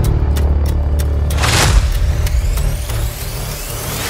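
Cinematic logo-intro music: a deep bass drone with a whooshing sweep about one and a half seconds in, and sharp clicks near the start.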